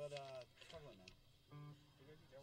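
Faint talk away from the microphones between songs, then a short steady pitched note about one and a half seconds in.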